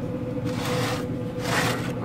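A metal baking sheet scraping across the steel grates of a Yoder YS640 pellet smoker as it is slid out and turned, in two short scrapes over a steady hum.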